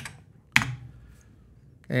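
A single sharp key click about half a second in from the Commodore Plus/4's keyboard: the Return key being pressed to enter RUN and start the program.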